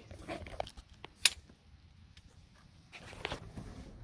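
Faint rustling and handling noise, with one sharp click a little over a second in and a few softer ticks later.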